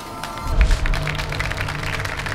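Television segment intro music: a short jingle that opens with a deep bass hit about half a second in, then runs on as a beat of many quick percussive hits.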